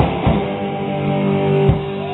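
Live rock band: a drum hit, then an electric guitar chord held and left ringing, with another drum hit near the end.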